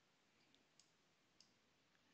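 Near silence, broken by three faint clicks of a computer mouse about half a second, just under a second, and about a second and a half in.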